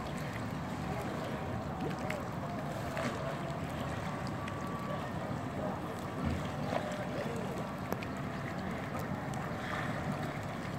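Swimming-pool ambience: steady wind noise on the microphone, with light splashing from a swimmer's breaststroke and faint distant voices.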